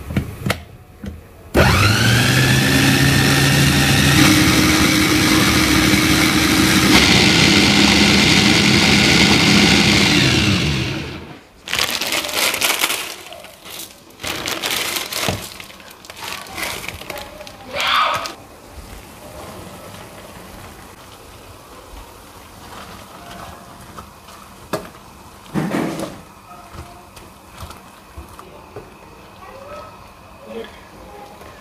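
Stainless-steel countertop blender grinding boiled tomatoes and chillies into sambal, running for about nine seconds. Its motor spins up with a rising whine, changes pitch partway through, then winds down and stops. Afterwards come scattered lighter kitchen knocks and clatter.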